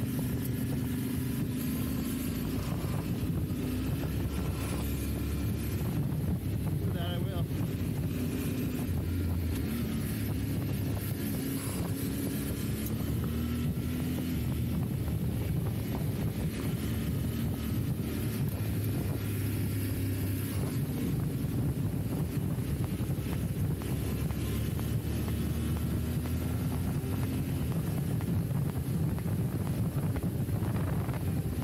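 Yamaha Ténéré 700's parallel-twin engine running under way on a dirt road, its pitch rising and falling gently with the throttle, with wind on the microphone.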